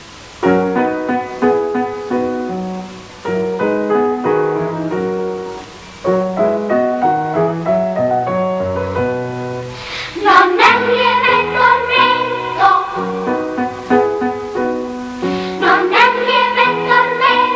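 Children's choir song with instrumental accompaniment. The first part is an instrumental passage of separate chords over a moving bass line, then the girls' voices come in together, loud, about ten seconds in.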